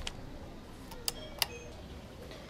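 Two short, sharp clicks about a third of a second apart, faint against a quiet steady background.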